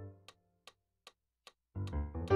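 A chord on a digital piano fades out over the first half second, leaving only sharp ticks keeping a steady beat of about two and a half a second; dense low chords start again near the end.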